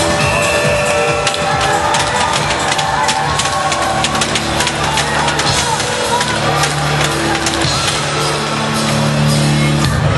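Music with a steady beat, played loud.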